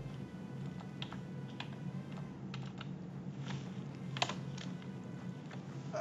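Typing on a computer keyboard: about ten scattered keystrokes at an uneven pace, one sharper key click a little past four seconds in.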